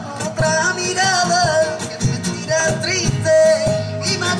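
Live flamenco-style song: a Spanish acoustic guitar strummed with steady percussion and hand claps under a singing voice that draws out long, wavering melismatic notes.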